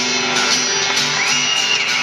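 Acoustic guitars strumming a steady rhythm with a harmonica playing over them; about a second in, a high note slides up and is held until near the end.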